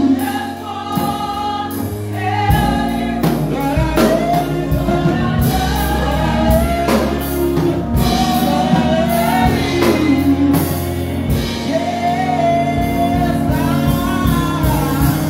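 Live gospel praise singing: a lead singer with women's backing vocals, over band accompaniment with sustained bass and a steady drum beat.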